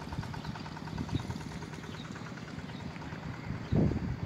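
Wind buffeting a phone's microphone: an uneven low rumble, with a louder gust near the end.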